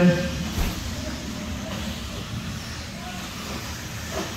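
RC racing buggies running together around an indoor dirt track, a steady mixed noise of motors and tyres echoing in a large hall.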